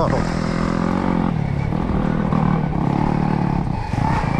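Stark Varg electric dirt bike on the move: its motor and drivetrain whine, shifting in pitch with the throttle and easing off briefly a couple of times, over a steady low rumble of tyres and chassis on the trail.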